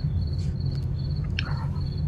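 Steady low electrical hum of the press-conference audio feed, with a faint, high-pitched pulsing whine above it.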